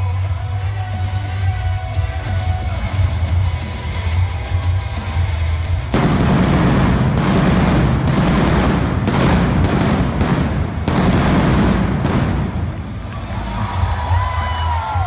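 Music with a heavy bass beat, then about six seconds in a sudden loud burst of stage pyrotechnics: a dense rushing noise with a rapid run of bangs for about five seconds, dying away near the end.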